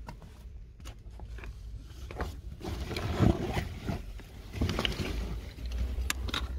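Footsteps and scuffs on soil and loose stone rubble, with irregular clicks and a louder burst of movement about halfway through. Camera handling and a low rumble of wind on the microphone run underneath.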